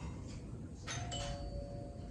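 Two-note chime: a higher note sounds about a second in, a lower note follows just after, and both ring on steadily for about a second and a half over faint room tone.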